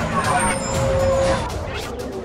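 Cartoon sound effect of monster trucks blasting out sound waves: a loud, noisy rush with a few falling whistling tones and one held tone in the middle.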